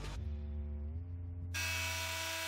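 A handheld rotary tool's small electric motor running at a steady speed, with a high hiss and a steady whine. It starts suddenly about one and a half seconds in, after a quieter steady hum.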